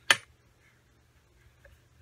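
A single sharp, loud click right at the start, then near silence with only faint room tone and a small tick later on.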